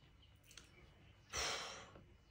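Near silence, then about a second and a quarter in a man lets out one breathy sigh that fades away over about half a second.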